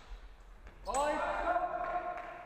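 A sharp knock about a second in, followed at once by a loud shout held for about a second.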